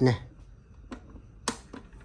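Clicks from the control panel of a KF-SQ10 plastic desk fan as it is switched on: a faint click, then a sharp, louder one about a second and a half in, and a softer one just after.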